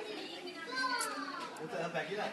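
Soft, high-pitched voice sounds, with one falling glide about a second in.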